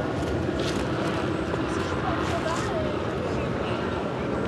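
Steady outdoor background noise with faint, distant voices.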